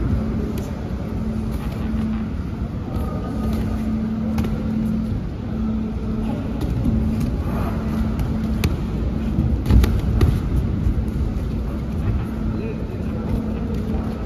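Boxing sparring in a large hall: a few sharp slaps and thuds of gloves landing, the sharpest about eight and a half and ten seconds in, over a steady low rumble and hum.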